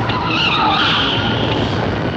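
Car tyres squealing as an SUV skids, a high squeal from about half a second in that fades out shortly before the end, over a loud, steady rumbling noise.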